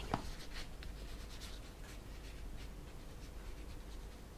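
Faint, irregular light clicks and taps of fingers working a laptop's keys and touchpad, with a sharper click just after the start.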